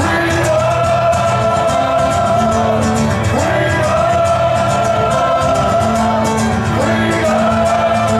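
Live acoustic rock performance: a male singer and a violin carry the melody in long held notes of about three seconds each, over fuller accompaniment.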